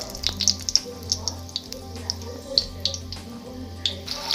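Whole spices (bay leaves, dried red chillies, cardamom and cinnamon) frying gently in hot oil in a steel wok, with scattered small crackles and pops. A steady low hum runs underneath.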